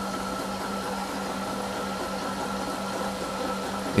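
Sous vide immersion circulator running in its water bath: a steady mechanical hum with a constant low tone and a fainter high whine.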